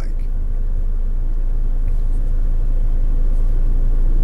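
Steady low rumble of a car, heard from inside the cabin.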